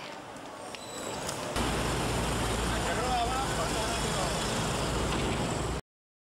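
Background ambience of faint voices over a steady low rumble. It gets abruptly louder about a second and a half in and cuts off suddenly near the end.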